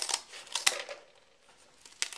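Scissors snipping through a cardboard cake board: a few short, sharp snips in the first second, the loudest about two thirds of a second in.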